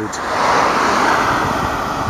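A car passing on the road: tyre and engine noise swelling early, peaking about half a second to a second in, then slowly fading.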